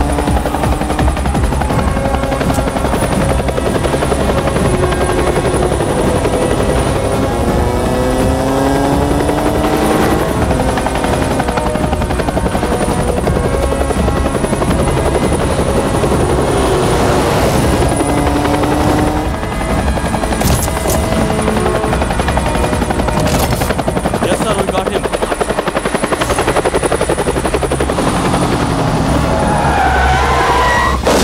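Helicopter rotor chopping steadily, layered with a motorcycle engine whose pitch rises as it accelerates, a few times.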